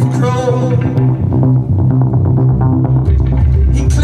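Live rock band playing: electric guitar, bass guitar and drums. About a second in, the cymbals and higher parts drop away, leaving bass and guitar; the full band with cymbals comes back near the end.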